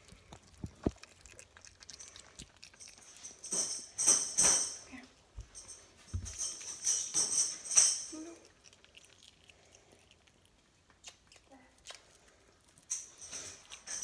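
Metallic jingling, like small bells or a tambourine, in short bursts: two bouts in the first half and another starting near the end, with quiet stretches between.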